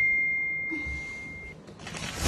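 A single bell-like ding that starts sharply and rings out, fading away over about a second and a half.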